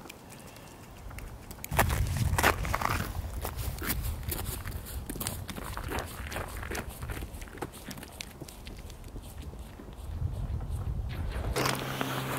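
Irregular crunching and knocking on snow-covered lake ice over a low rumble. It starts about two seconds in, eases off in the middle and picks up again near the end.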